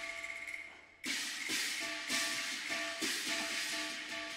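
Cantonese opera instrumental accompaniment: a bright crash about a second in, then percussion strikes roughly every half second over a few steady held notes from the melodic instruments.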